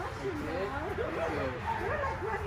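A dog whining and yipping in a run of wavering, sliding cries.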